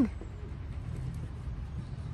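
Low, steady outdoor background rumble with no distinct event.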